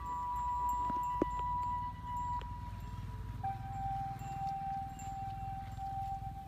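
Background music of slow, long-held notes, stepping down to a lower note about three and a half seconds in, over a low steady rumble.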